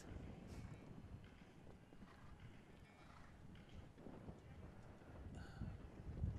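Faint, low thudding of a horse's hooves galloping on turf, barely above near silence.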